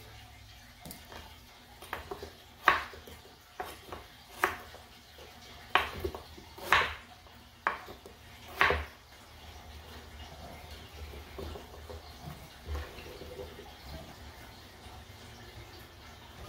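Kitchen knife chopping peeled winter melon into chunks on a wooden board: a series of sharp knocks, about eight in the first nine seconds, then only quieter handling.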